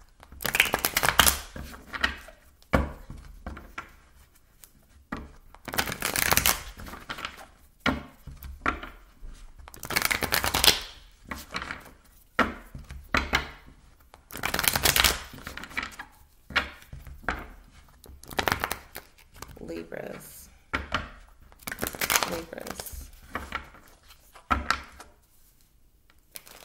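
Tarot deck being riffle-shuffled on a wooden tabletop, the two halves flicked together in a quick flutter of cards again and again, one riffle every second or two.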